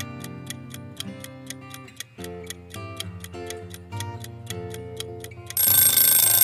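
Quiz countdown timer sound effect: a clock ticking about four times a second over background music with held notes. About five and a half seconds in, a loud ringing alarm sounds as the countdown runs out.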